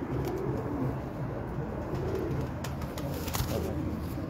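Domestic pigeons cooing continuously, with a few brief clicks.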